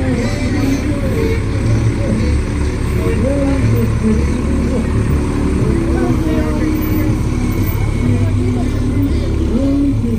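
Fire pumper's diesel engine running with a steady low rumble as the truck rolls slowly past, with many voices chattering and calling around it.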